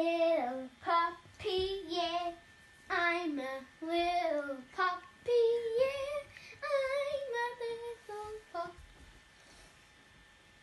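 A child singing a short tune in a run of brief sung phrases that wander up and down in pitch, stopping about a second before the end.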